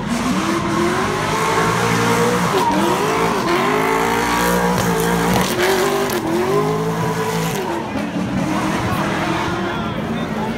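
A drift car's engine revving hard, its pitch swelling up and down again and again, while its tyres spin and squeal as it circles.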